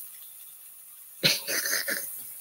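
Fish sizzling faintly as it pan-fries, then a person coughing briefly, twice, about a second in.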